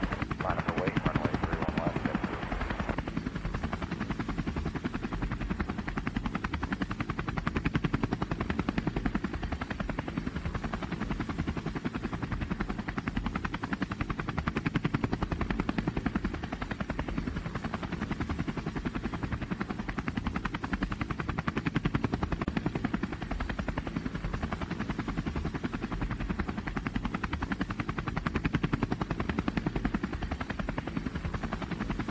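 DJI Phantom 2 quadcopter's motors and propellers buzzing steadily, heard through the GoPro camera mounted on it, while the drone descends under its failsafe return-to-home. A radio voice trails off about three seconds in.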